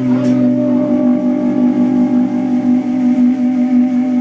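Electric guitars and bass through their amplifiers holding one steady sustained note as a drone, with one brief sharp click just after the start.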